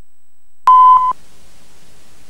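Videotape line-up test tone: a single steady beep lasting about half a second, starting a little under a second in. A low, even tape hiss follows.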